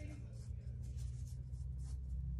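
Filbert paintbrush stroking acrylic paint onto canvas paper: faint short scratchy strokes over a low steady hum.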